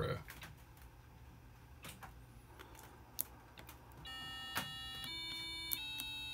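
Small speaker driven by an Arduino's tone() function, beeping square-wave notes from the push-button keyboard: three steady notes run straight into one another with no silence between them, the pitch stepping up and then a little down, after a few soft clicks. The note keeps sounding rather than stopping, the sign that the code is holding the previous button's value because the variable is not reset to zero.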